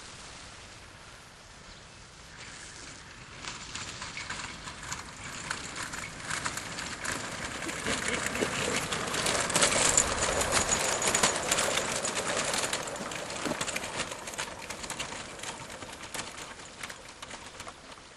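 Electric microlight trike's propeller and electric motor coming closer, a rattling whoosh that builds to its loudest about ten seconds in with a faint high whine, then fades as the propeller slows.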